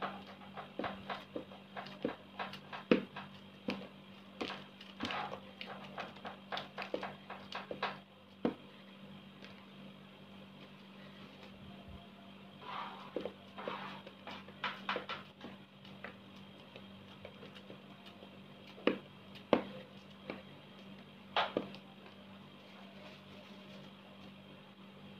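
Clicks and taps of hands working with utensils and packaging at a kitchen counter: quick and busy for the first eight seconds, then only an occasional knock, over a steady low hum.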